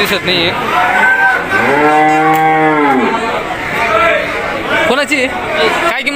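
A cow moos once in the middle, a single call of about a second and a half that rises and then falls in pitch, over faint talk in the background.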